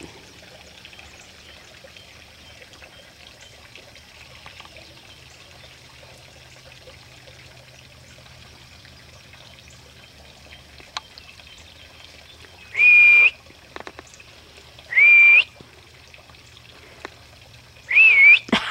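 A person whistling two short high notes about two seconds apart, each about half a second long and sliding up into a steady pitch, calling to the puppies. A faint click comes a little before.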